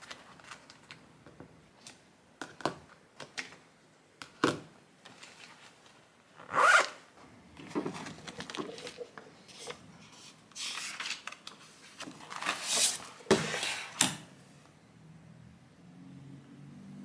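Zipper of a fabric pencil case being pulled, amid small clicks and taps of pens and the rustle of a spiral-bound notebook being handled and opened on a desk. Short rasping sweeps come in the second half, between scattered light clicks.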